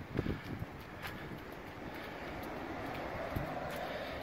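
Steady noise of road traffic from the street above, with some wind on the microphone; a faint drone builds slightly toward the end.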